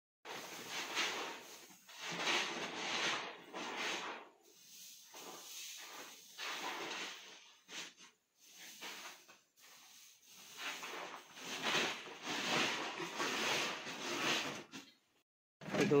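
Wheat grain scooped with a metal pan and poured into a woven plastic sack: a series of rushing pours, each a second or two long, with the sack rustling.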